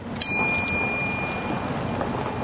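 A single bell-like ring, struck once a moment in and fading over about a second and a half, over a steady rushing noise.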